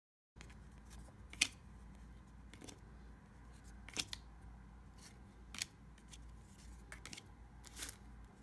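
Trading cards and foil packs being handled: about half a dozen short, sharp clicks and snaps over quiet room tone as cards are worked through a stack. The loudest comes about a second and a half in, after a brief gap of silence at the start.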